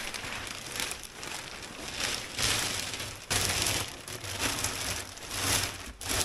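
Thin clear plastic sheeting crinkling and rustling close by as it is handled and pushed down into a large earthenware crock to line it. The rustle is continuous and comes in uneven, louder waves.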